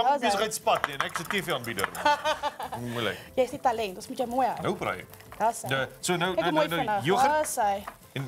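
People talking over a wire whisk beating thick yoghurt in a ceramic bowl; the whisk's stirring and light clicks against the bowl sit under the voices.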